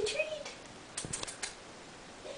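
A brief voiced sound at the start, then a quick run of about five sharp clicks about a second in.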